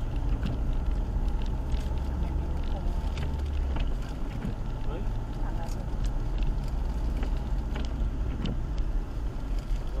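Car cabin while driving on a wet road in rain: a steady deep engine and road rumble, which shifts about four seconds in, with scattered light ticks of rain on the windshield.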